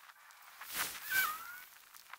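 Footsteps crunching in snow, two steps close together around the middle, with a faint short whistle-like tone that dips and rises in pitch just after the second step.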